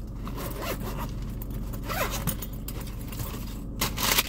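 Zipper on a fabric makeup bag being pulled open in several short rasps, the longest and loudest near the end.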